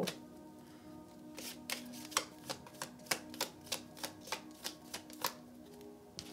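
Tarot cards handled and shuffled, a run of sharp card snaps about three a second starting about a second and a half in, over soft steady background music.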